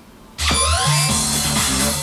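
Karaoke machine's score-reveal music bursts in suddenly about half a second in: a loud, upbeat jingle with a bass line, a beat and repeated high beeping tones.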